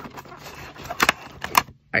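Cardboard and plastic doll packaging being handled and pulled out of its box: rustling with a few sharp clicks and snaps, about a second in and again shortly after.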